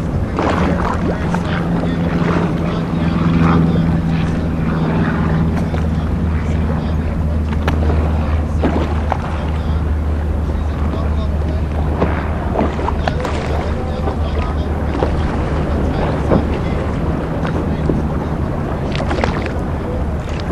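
A steady low engine drone runs throughout, mixed with wind and water noise and occasional short knocks.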